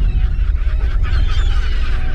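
Many birds calling at once, a dense chatter of short squawks, over a deep, steady rumble.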